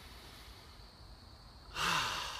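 A quiet pause with a faint steady background and a thin high steady tone, then, near the end, a man draws one deep, audible breath in through the mouth.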